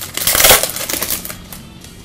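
Foil trading-card pack wrapper being torn open and crinkled in the hands, a burst of crackling that is loudest about half a second in and fades out by about a second and a half.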